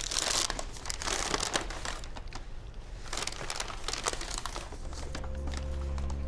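Paper takeout bag and aluminium-foil burger wrapper rustling and crinkling in irregular bursts as the burger is taken out and handled. Near the end a low steady music drone comes in underneath.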